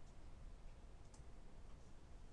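Near silence: faint room tone, with a faint computer-mouse click a little past a second in, the click that advances the slide.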